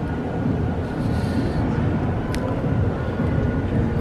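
A steady low rumble of outdoor background noise, with one faint click a little past halfway.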